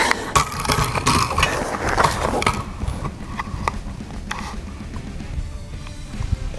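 Rifle bipod legs being extended and set: a quick run of metallic clicks and sliding rattle in the first couple of seconds, then a few lighter clicks as the rifle is settled.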